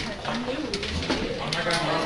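Overlapping chatter of many students talking at once, no single voice clear.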